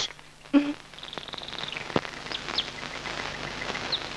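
Small birds chirping faintly, short high chirps and one brief trill, over the steady hiss of an old film soundtrack, with a single click about halfway.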